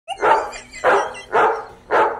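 A dog barking repeatedly, about two barks a second, each bark loud and short.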